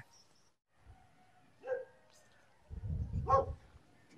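A dog barks twice, a short bark near the middle and another about a second and a half later, over a low rumble.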